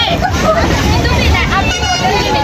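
Several people talking at once inside a moving passenger train carriage, over the low, steady running rumble of the train.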